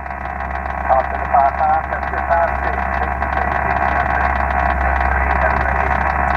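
Single-sideband receive audio on 20 metres from an Icom IC-7000 transceiver: a steady band of static hiss. About a second in, a weak station's voice comes faintly through it for a second or two, the other station sending back its signal report.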